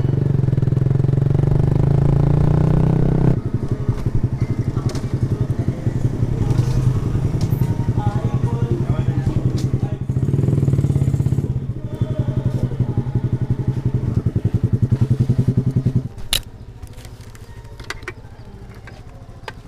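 Small motorcycle engine running under way, steady at first, then dropping to a low, pulsing chug as the bike slows and rolls along at low revs. The engine cuts off suddenly about sixteen seconds in, followed by a single sharp click.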